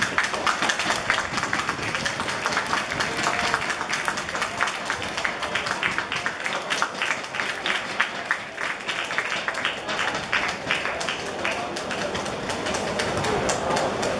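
Applause from a small crowd: many separate hand claps, loosening a little near the end, with voices mixed in.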